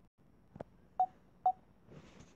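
Two short, high beeps about half a second apart, after a soft knock: a tablet's volume-change feedback tone as its volume is pressed up.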